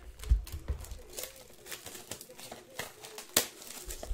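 Plastic shrink wrap on sealed trading-card boxes crinkling and rustling as the boxes are handled, with scattered light clicks and one sharp click about three and a half seconds in.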